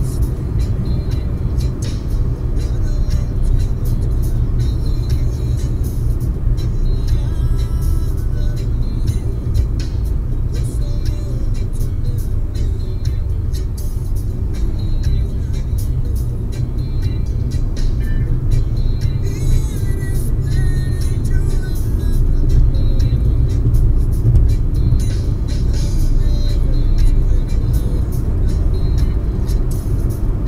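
Steady low road and engine rumble heard inside a car cruising at highway speed, about 80 to 110 km/h, with faint music underneath.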